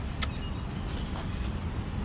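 Steady outdoor background noise: a low, fluttering rumble under a constant high-pitched hiss, with two faint clicks near the start.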